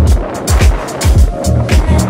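Background music with a heavy beat: deep bass notes that slide down in pitch, and quick hi-hat ticks.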